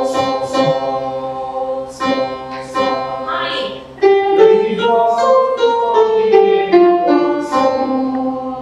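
Voices singing a melody in unison with an electronic keyboard playing along, as in a choir rehearsal. About halfway through the singing gets louder and the tune steps downward.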